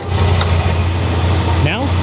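A car engine idling steadily, heard as a constant low hum, with a sharp click right at the start and a faint tick about half a second in.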